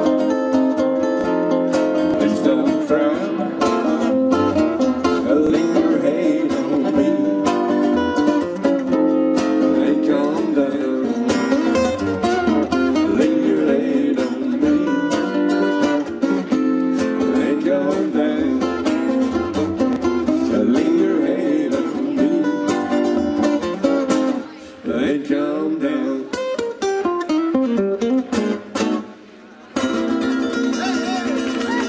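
Two acoustic guitars strumming steadily in a live instrumental passage of a bluesy country song. Near the end the playing breaks up into a few separate chords with gaps between them as the song winds down.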